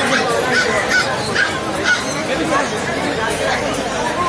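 Busy market din: crowd chatter with many short bird and fowl calls, some of them honking, over a steady murmur.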